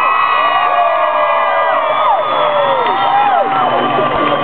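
Concert audience cheering, with many voices yelling and whooping at once in long, sliding calls.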